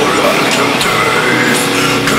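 Progressive death metal song playing with distorted guitars and a harsh growled vocal over it.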